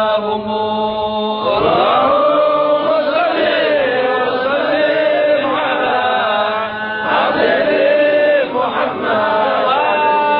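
A man's voice chanting an Islamic devotional chant unaccompanied, drawing out long notes that waver and bend slowly in pitch.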